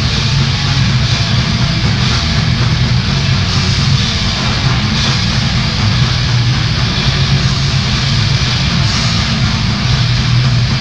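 Grindcore band playing live: distorted electric guitars and drums in a dense, loud, unbroken wall of sound.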